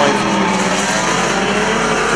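Engines of several pre-1975 classic banger-racing cars running together as the pack races round the track, a steady mixed engine note with no crash impacts.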